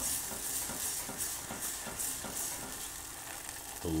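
Metal wire whisk stirring a thick roux of butter, flour and a little beef broth in a stone-coated saucepan, the paste sizzling. The whisk strokes come about twice a second, then ease off near the end.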